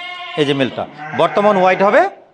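Sheep bleating loudly several times in a row, the last call long and wavering.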